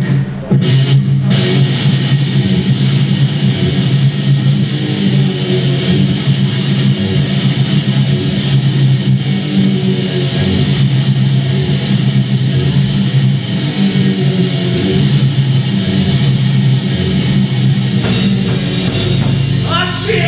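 Heavy metal band playing live: distorted electric guitars and bass guitar, loud and dense, with no vocals yet, heard through the club's PA from the floor.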